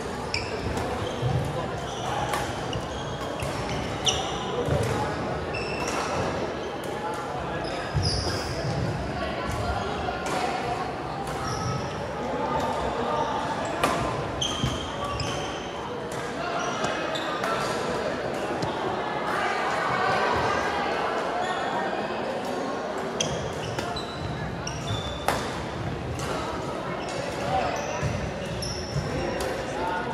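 Badminton rally: repeated sharp racket strikes on the shuttlecock and short sneaker squeaks on the gym floor, echoing in a large hall, over a steady murmur of voices.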